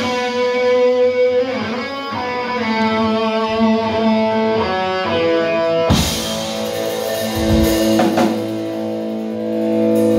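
Live rock band playing an instrumental passage: electric guitars holding ringing notes over bass, with the drums and cymbals coming in fuller about six seconds in.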